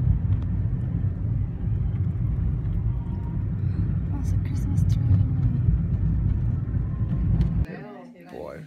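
Car driving, heard from inside the cabin: a steady low rumble of road and engine noise that cuts off suddenly near the end.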